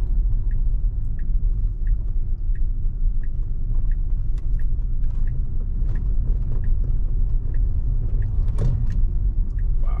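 Low, steady road and tyre rumble inside the cabin of an electric Tesla on a slow residential turn. A turn-signal indicator clicks evenly, about once every 0.6 seconds, for the left turn.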